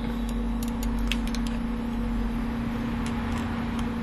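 Computer mouse clicking several times in short, irregular bursts over a steady background hum and hiss.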